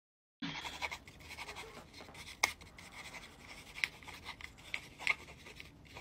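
Faint scratching of a pen writing on paper, with a few light clicks scattered through it.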